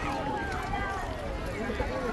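Background chatter of several people's voices, some of them children's, with no single clear speaker, over a low rumble.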